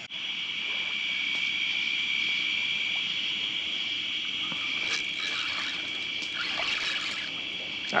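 Steady, high-pitched chorus of night insects, with faint trickling of water at the shoreline and a few small ticks in the second half.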